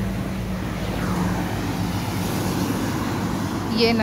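A motor vehicle's engine humming at a steady low pitch, with road traffic noise around it.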